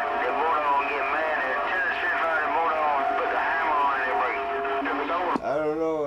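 CB radio receiver audio: another station's voice comes through the speaker, thin and garbled in static, with steady whistling tones over it. The received signal cuts off suddenly about five seconds in, and a man's voice follows close to the microphone.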